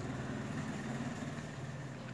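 A steady low hum with a faint haze behind it, easing slightly toward the end.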